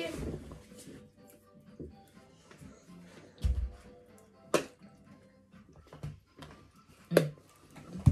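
Faint background music, with a low thump about three and a half seconds in and sharp clicks about four and a half and seven seconds in as a plastic juice bottle is twisted open and handled.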